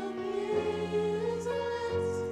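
Mixed choir of men's and women's voices singing a slow song in long held chords, the harmony changing with a low note entering about half a second in.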